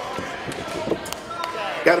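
A few scattered thuds and knocks as wrestlers move and strike on the ring canvas, each short and sharp, over a murmur of voices in the hall.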